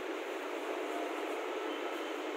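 Steady background hiss with no distinct events: an even noise floor with nothing rising above it.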